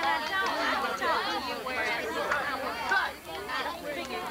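Several voices talking over one another: overlapping chatter from people at a youth softball game, with no single clear speaker.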